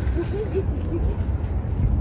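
Brief, indistinct speech over a steady low outdoor rumble.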